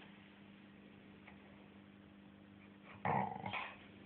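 A Staffordshire bull terrier gives one short vocal sound, under a second long, about three seconds in, over a faint steady hum.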